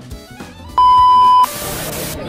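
A loud, steady electronic beep, one pure tone lasting under a second, starting a little under a second in and cutting off sharply. A short burst of hiss follows it near the end, over faint background music.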